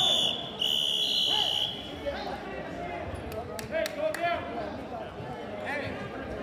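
Referee's whistle blown twice, a short blast and then a longer one of about a second, stopping the wrestling. Crowd voices carry on underneath, with a few sharp knocks in the middle.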